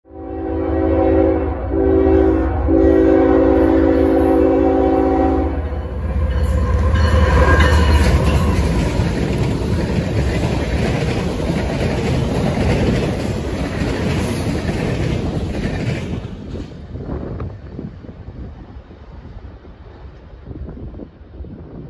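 Diesel locomotive passing close by, sounding its chime air horn in three blasts, the last one long, over a heavy engine rumble. The horn gives way to the clatter of wheels over the rails, which fades after about sixteen seconds.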